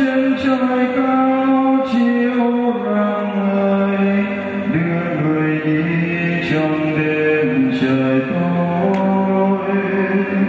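Yamaha electronic keyboard playing slow, sustained chords that change every second or two.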